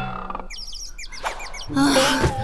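Birds chirping: a quick run of short, high, downward-sweeping chirps, followed near the end by a person's brief 'ah'.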